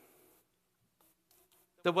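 A short pause in a man's speech in a reverberant church. His voice dies away, a few faint brief rustles follow, and he starts speaking again near the end.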